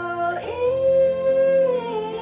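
A young woman singing a song line, holding one long note from about half a second in, then letting the pitch fall and waver near the end.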